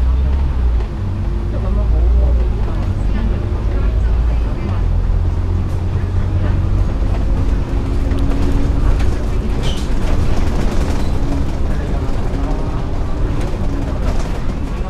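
Double-decker bus engine and drivetrain running as the bus drives along, heard from inside on the upper deck: a loud low drone with a steady whine through the middle of the stretch.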